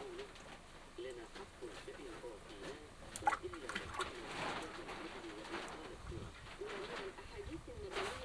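Pigeons cooing over and over in low, undulating calls, with a few sharp clicks about three and four seconds in.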